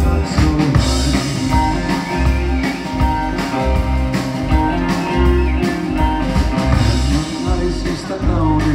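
A live rock band playing: electric bass, guitar, keyboard and drum kit, with a male singer's vocals.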